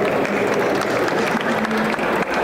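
Applause from a small audience: many hands clapping steadily.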